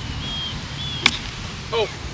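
A golf club striking the ball once on a short shot near the green, a single sharp click about a second in.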